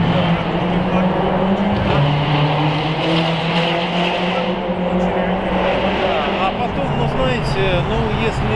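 A motor vehicle's engine hum, steady and low, stepping down slightly in pitch about two seconds in, under the voices of a crowd.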